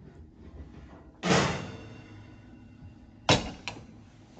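A kitchen oven being opened and a metal baking tray taken out, with a clatter that rings on briefly about a second in. The oven door then bangs shut a little after three seconds in, followed by a lighter knock.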